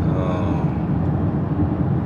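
Steady road and engine rumble heard from inside the cabin of a moving car.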